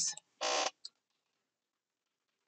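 A short breath about half a second in, then a single keyboard key click.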